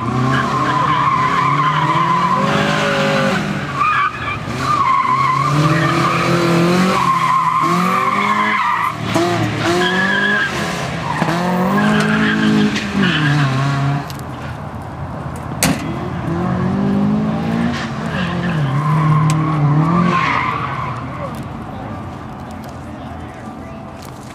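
Mazda Miata's four-cylinder engine revving up and down as it is driven hard around an autocross course, with tires squealing through the corners. The sound drops about two-thirds of the way through, swells once more, then fades near the end as the car moves away.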